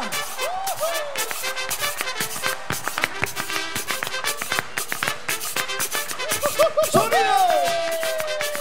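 Live brass-band music with a fast, busy percussion beat on timbales and cowbell, and short sliding notes over it. Near the end a long note rises and then slides slowly downward.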